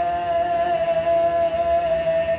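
A man singing unaccompanied in a small bathroom, holding one long steady note.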